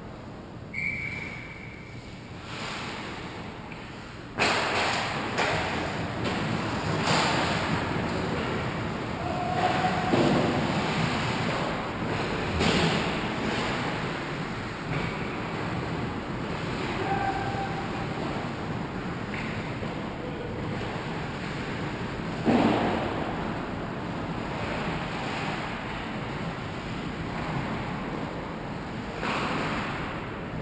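Ice hockey play in an arena: skate blades scraping and carving on the ice, with scattered clacks of sticks and puck. One sharp, loud knock stands out about two-thirds of the way through.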